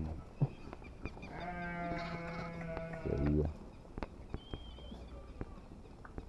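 A sheep bleats once in a long, steady call lasting nearly two seconds, starting about a second in.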